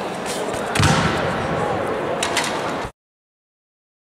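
Echoing indoor-arena noise of background chatter, with one loud thud about a second in and a few sharp clicks later. The sound then cuts off abruptly to dead silence near the end.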